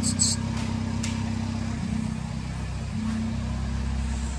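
A steady low mechanical hum with a few even tones in it, shifting slightly about two and three seconds in. A short cluster of high-pitched clicks comes right at the start.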